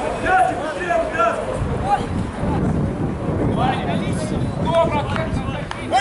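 Indistinct shouts and talk from people around a rugby pitch, with wind rumbling on the microphone from about a second and a half in.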